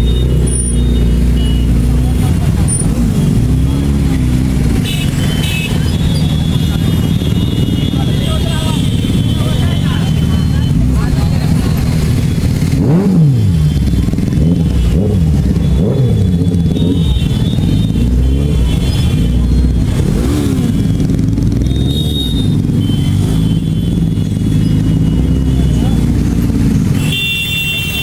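Several motorcycle engines running in slow, crowded street traffic, their revs rising and falling a few times. Horns sound several times over the engine noise.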